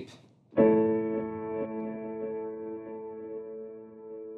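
Sampled Steinway "Victory" upright piano (The Crow Hill Company's Vertical Piano virtual instrument) played through its Torn Tape preset: a G♭maj7 ♭2 sus2 chord is struck about half a second in, then held and slowly fading. The tone is dull, with the top end cut off.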